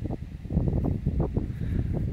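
Wind buffeting a handheld phone's microphone, with rustling handling noise. It is an irregular low rumble made of many short crackles.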